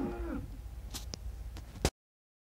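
Cattle mooing: a long moo ends about half a second in, and the herd is then quieter. A few faint clicks follow, then a sharp click just before the sound cuts off suddenly.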